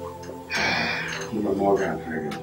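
Soft background film music with sustained held notes, under a breathy gasp about half a second in and then a brief bit of voice.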